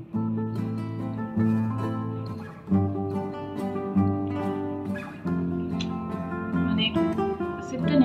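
Background music: an acoustic guitar playing a slow run of chords that change about every second or so.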